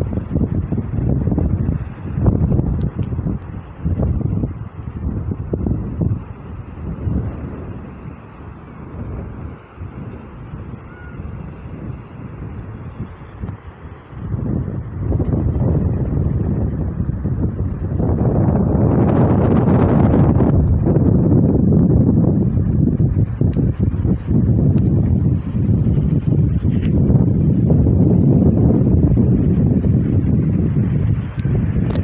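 Wind buffeting the microphone: a gusty low rumble that eases off for a few seconds around the middle, then picks up again and stays strong, with a hissier gust about two-thirds of the way through.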